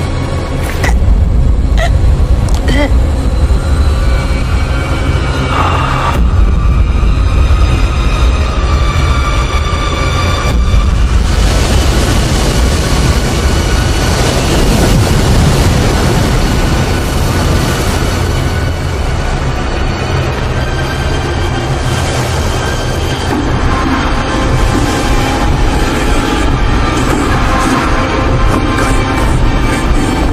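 Loud, dark horror-film score with a heavy, rumbling low end and held tones. A few sharp hits come in the first few seconds.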